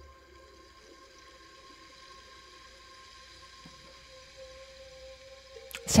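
Soft ambient background music of steady, held tones, faint under a pause in the narration.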